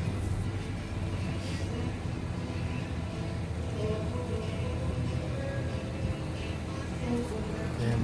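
Vehicle engine idling steadily with a low hum heard from inside the cabin, with faint music playing over it.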